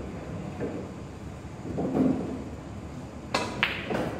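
A pool cue strikes the cue ball with a sharp click a little over three seconds in, followed about a quarter second later by a second, ringing click of the ball hitting another ball or the rail. Faint murmur of voices in the hall before the shot.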